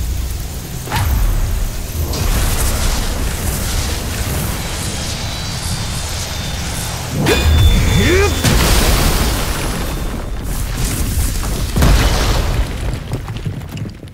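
Battle sound effects of a magical attack: deep booms and rumbling blasts under a rushing, whooshing noise, with heavy impacts about a second in, around seven seconds in and near twelve seconds, dying away at the end.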